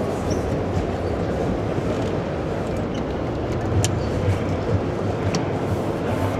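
Steady low rumbling noise with a hum underneath that swells slightly midway, and a few faint clicks.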